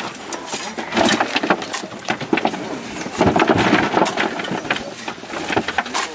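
Metal shovels scraping and digging into loose soil and throwing it into a grave: an irregular run of sharp scrapes and dull thuds of falling dirt.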